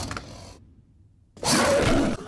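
Sound effects from an animated TV episode's soundtrack: a sound fades out, cuts to full silence for under a second, then a sudden loud rush of noise starts about a second and a half in.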